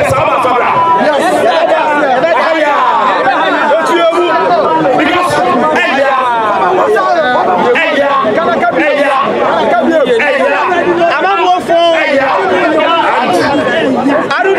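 A man speaking loudly and without pause, with other voices overlapping in the background.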